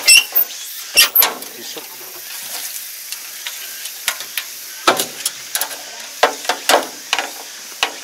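Sharp metallic knocks and clicks as the hinged fuel-filler cover on the side of a Kubota ARN460 combine harvester is opened by hand and the filler cap handled, the loudest just at the start and about a second in, then a run of quicker knocks towards the end.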